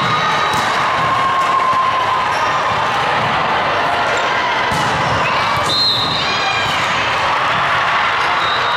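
Volleyball rally on a hardwood gym court: sharp ball hits and short high shoe squeaks over a steady din of crowd chatter and cheering.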